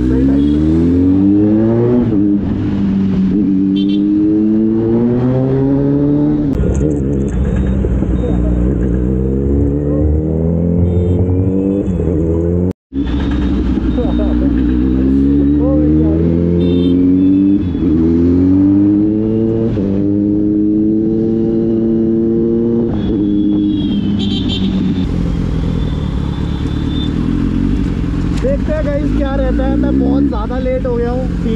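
Kawasaki Z900's inline-four engine accelerating through the gears in traffic, its pitch climbing and dropping back again and again with each upshift. The sound cuts out for a moment partway through.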